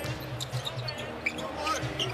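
A basketball being dribbled on an arena hardwood court, with short sharp bounces over the steady hum of the arena crowd.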